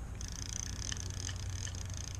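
Daiwa spincast reel being cranked by hand, its gears giving a soft, fast purring whir with small scattered ticks. The reel has just been cleaned and reassembled with a left-out part put back, which makes it turn a little stiffer.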